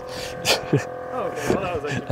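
A man clambering up over the tailgate into the bed of a Tesla Cybertruck: a short scuff or knock about half a second in, then a brief laugh, over a steady hum.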